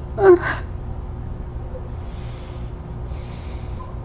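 A woman gives a loud, short voiced gasp right at the start, then breathes out audibly twice, once about two seconds in and again near the end.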